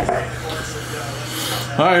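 A rigid cardboard trading-card box being handled and its lid slid open: a continuous scraping rub of card against card, with a short click at the start. A man's voice begins near the end.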